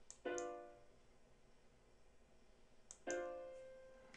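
Two piano chords from a software rock piano, each struck once and dying away over about a second, one just after the start and one about three seconds in, each with a faint mouse click beside it. The chords are the edited notes sounding as their velocities are redrawn with the pencil tool.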